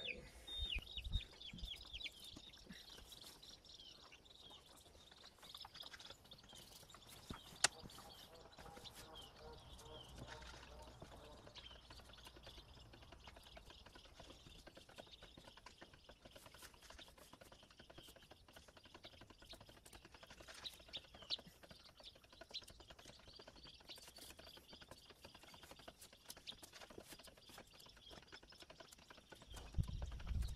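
Faint outdoor ambience: small birds chirping on and off, with scattered soft clicks and scrapes of a knife cutting a large snapping turtle's hide and meat; one sharp click about seven and a half seconds in.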